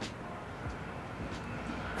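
Outdoor city street ambience: a steady low rumble of distant traffic.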